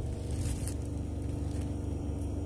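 Steady low hum of store background noise, with faint rustling of plastic wrap on a handled storage container.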